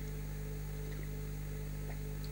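Steady low electrical hum with a faint higher steady tone over it, unchanging throughout.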